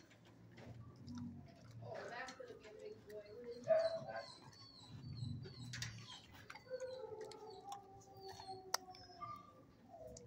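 Dogs whining and howling in long cries that slide up and down in pitch, with a string of short high squeaks in the middle and a long falling cry near the end.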